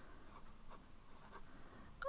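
Faint scratching of a fine-tip pen writing on lined notepad paper, a few light strokes.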